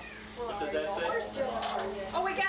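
A woman's voice in drawn-out exclamations, rising and falling in pitch, over a steady low hum.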